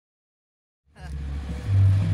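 Dead silence for about the first second, then a loud, steady low bass rumble comes in and grows louder, from a loud outdoor loudspeaker sound system playing music.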